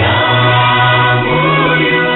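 A choir singing a gospel song over accompaniment, with held bass notes that step to a new pitch about every second.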